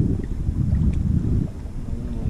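Wind buffeting the microphone: a loud, uneven low rumble that eases briefly about one and a half seconds in.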